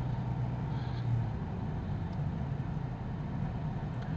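Steady engine and tyre noise heard from inside a car's cabin while driving at road speed on pavement, a continuous low hum.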